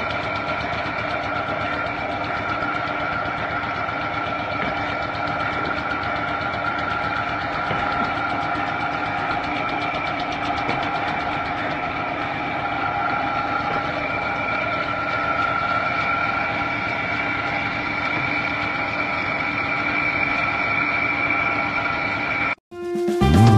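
Improvised motor-driven brick conveyor running up a ladder: a steady mechanical drone and fast rattle with a constant high whine.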